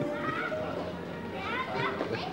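Several young people's voices talking excitedly close by on a busy street, high-pitched and rising, in two short bursts: one about half a second in and one near the end.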